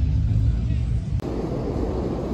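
A low outdoor rumble, then a sudden cut about a second in to heavy rain pouring down, a steady hiss.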